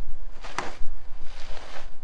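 A bare hand slapping a tennis ball off a batting tee: one sharp smack about half a second in, followed by a softer stretch of noise lasting most of a second.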